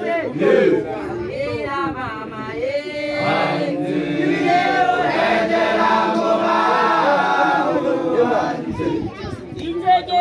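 Unaccompanied group of voices singing and chanting together, with longer held notes in the second half.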